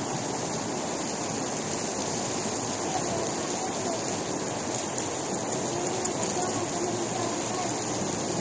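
Flash-flood water rushing steadily across a road, a continuous even roar of turbulent flow.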